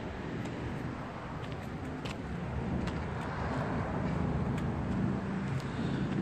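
Steady hum of road traffic, growing a little louder over the second half, with a few faint clicks.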